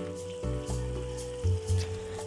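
Chili paste sizzling in oil in a wok as a thin stream of vinegar is poured in, under background music with a held note and a bass line.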